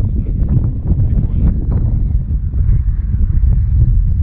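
Wind buffeting the camera microphone: a loud, low, uneven noise that swells and dips throughout.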